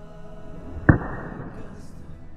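A single sharp crack of a golf club striking a target bird golf ball (a golf ball with a shuttlecock-like feather skirt) off a hitting mat, a little under a second in.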